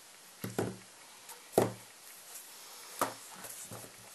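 About five light knocks of pliers and a cord with a metal crimp end being handled and put down on a tabletop, the loudest a little under two seconds in.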